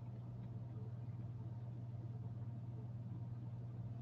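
Quiet room tone: a steady low hum with no other sound.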